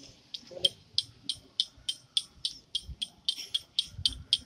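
A steady rhythm of sharp, bright clicks, about three a second, heard as a musical beat.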